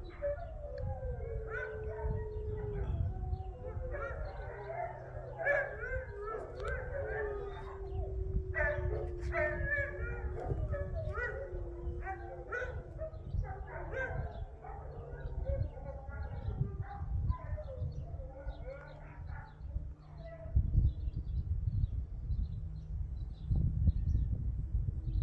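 Several dogs howling together: one long, wavering howl slides slowly downward through the first dozen seconds, with shorter, higher howls and yips over it. A low rumble runs underneath.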